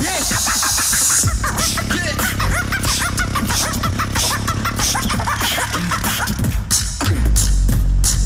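Team beatboxing performed live on microphones: several beatboxers layer vocal clicks and percussion with short warbling pitched sounds over a bass into one continuous beat. A heavier bass comes in near the end.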